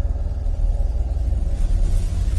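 A steady, deep rumble, the low drone of a suspense film's soundtrack.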